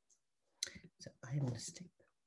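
A few short, sharp clicks, with a brief low murmur of voice between them.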